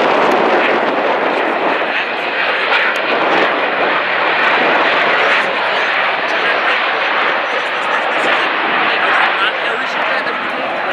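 Bombardier CRJ700 regional jet's twin tail-mounted turbofan engines running as it rolls along the runway, a loud, steady rush of jet noise.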